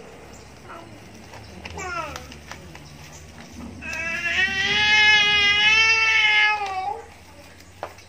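A short call that falls in pitch about two seconds in, then a long, high, steady call lasting about three seconds from about four seconds in, wavering slightly in pitch. This drawn-out call is the loudest sound.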